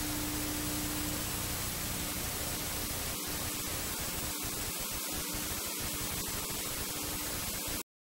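TV static: a steady hiss of white noise with a faint low hum, cutting off suddenly near the end.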